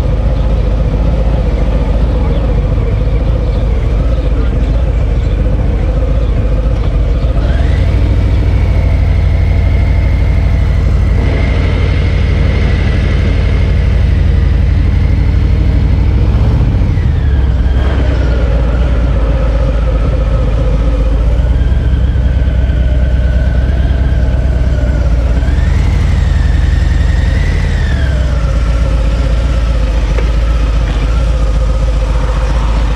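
Cruiser motorcycle engine rumbling at idle, then pulling away about eight seconds in with a rise in pitch. It holds steady, drops back around the middle, picks up again near the end and then eases off.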